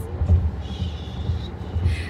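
Low, steady rumble inside a car cabin, with a faint high-pitched sound for about a second in the middle.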